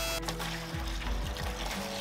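Background music over a stream of water pouring from a garden hose into a bucket. The water is being flushed out of a Porsche 996 cooling system that is contaminated with engine oil.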